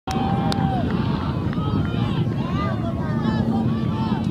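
Indistinct chatter of many voices from players and spectators around a soccer field, with wind rumbling on the microphone.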